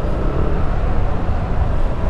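Motor scooter being ridden along a city street: steady engine and road noise.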